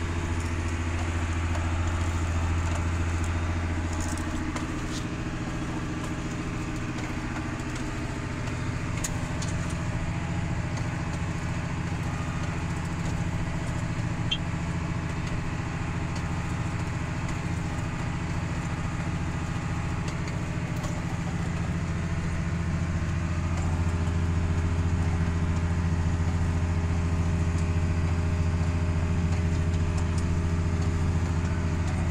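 John Deere tractor's diesel engine running steadily while pulling a corn planter across a field, heard from inside the cab as a low, even drone. It grows a little louder about three-quarters of the way through.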